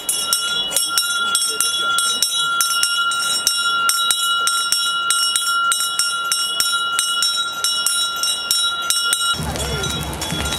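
A bell rung rapidly and continuously, several strokes a second over a steady ringing tone; it cuts off suddenly near the end.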